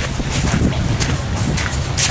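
Wind buffeting the microphone, a steady rough rumble with a few brief gusts.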